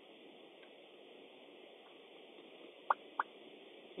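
Faint steady hiss of a quiet car cabin, with two small sharp clicks close together about three seconds in.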